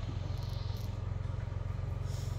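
Toyota Kijang Grand Extra's petrol engine idling steadily behind the car by the tailpipe, an even low pulsing.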